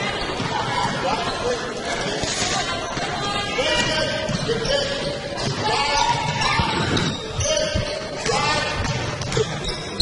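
Basketball being dribbled on a hardwood gym floor in repeated knocks during live play, with voices of players and spectators echoing in the large hall.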